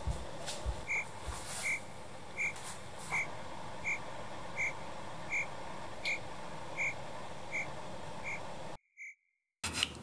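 A repeating sound-effect chirp at one high pitch, evenly spaced about three every two seconds over faint room hiss, with the audio dropping out briefly near the end.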